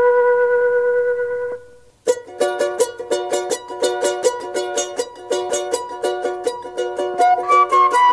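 Andean folk music: a held flute note dies away, and after a brief gap a small plucked-string instrument comes in with rapid, even strumming. A flute line joins again near the end.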